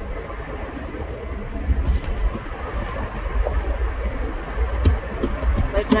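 Car driving, heard from inside the cabin: a steady low rumble of engine and road noise, with a few faint clicks.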